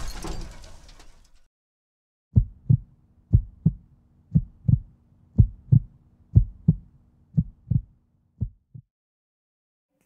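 A noisy rumble dies away over the first second or so, then a heartbeat sound effect: seven paired lub-dub thumps, about one pair a second, over a faint low hum, stopping near the end.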